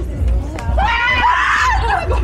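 A woman shrieking in fright, startled by a person hidden in a bush disguise, one high-pitched scream of a little over a second starting near the middle, over a steady low rumble.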